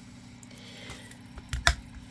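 Handheld single-hole punch squeezed through thick cardboard, giving two sharp metal clicks near the end as it cuts through.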